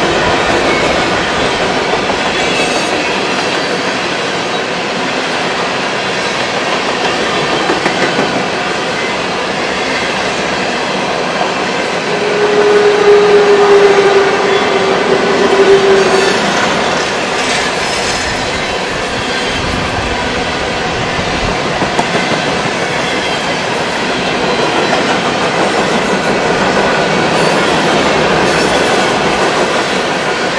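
Freight train of coal hopper cars rolling past at close range: a steady rumble and rattle of steel wheels on the rails, with a high wheel squeal for a few seconds a little before the middle and a few low knocks later on.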